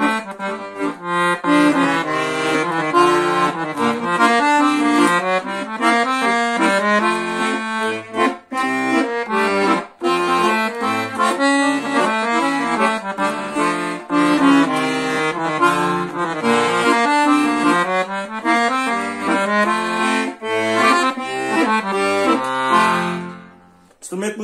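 Scandalli 120-bass octave-tuned (oitavada) piano accordion playing a melody on the right-hand keys in the bassoon register, with occasional left-hand bass notes underneath. The playing ends and the sound dies away near the end.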